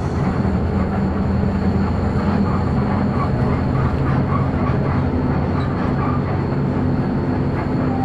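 Steady engine drone and road rumble heard inside the cabin of a moving shuttle bus.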